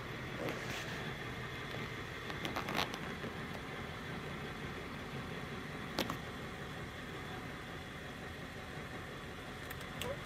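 Steady low hum inside the cab of a 1999 Ford E450 with its 7.3L Powerstroke turbo diesel idling and the air conditioning blowing. A few light clicks come around three seconds in, and a sharper click about six seconds in.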